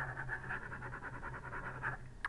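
A pen scribbling rapidly back and forth on paper, crossing out writing in a fast, even rhythm of scratchy strokes, over a low steady hum.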